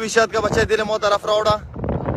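A high-pitched voice speaking loudly, stopping about a second and a half in.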